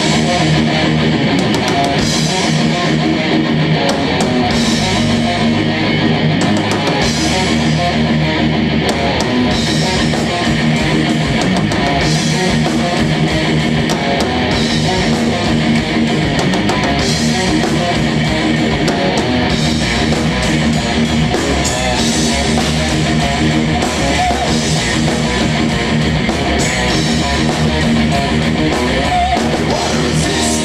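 A live rock band playing loudly: distorted electric guitars, bass and a drum kit in a steady instrumental passage with no vocals.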